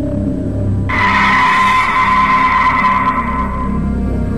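A sudden, loud screeching horror sound effect cuts in about a second in, holds for about two and a half seconds and fades, over a low droning music bed.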